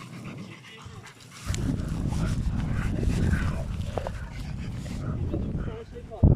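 German shepherd panting close by, with a low rumble coming in about a second and a half in.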